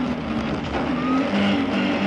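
Rally Lada 21074's four-cylinder engine running at speed, heard from inside the cabin over road noise. Its pitch drops a little over a second in and rises again shortly after.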